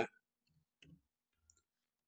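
A few faint computer keyboard key clicks.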